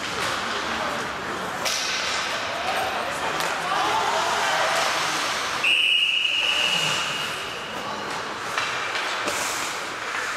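Ice hockey referee's whistle blowing one long, steady blast about six seconds in, stopping play. Before it, shouting voices and the scrape of skates on ice.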